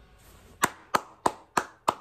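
One person clapping hands slowly and evenly, about three claps a second, starting a little over half a second in.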